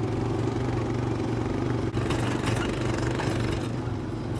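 Honda Foreman 450 ATV's single-cylinder four-stroke engine running at a steady pace while it tows a field sprayer.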